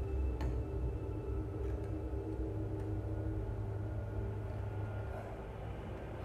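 Sci-fi film soundtrack played over a hall's loudspeakers: a low, steady rumble with a soft held tone, and a short click about half a second in.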